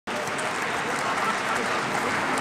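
Steady applause from members of parliament clapping at their seats.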